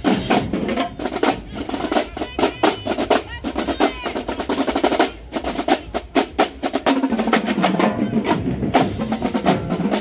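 Marching band drumline playing a cadence on snare drums and tenor drums while marching, with dense rapid strokes and rolls.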